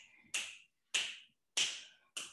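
Finger snaps beating out a steady tempo, short sharp clicks evenly spaced a little under two a second, setting the count for a dance routine.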